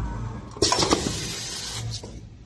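Semi-automatic wipe packing machine running with a low hum, then a sudden loud rushing, clattering noise about half a second in that runs for over a second before dropping away.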